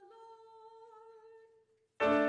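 A woman's unaccompanied singing voice, faint, holding one long final note that stops about a second and a half in.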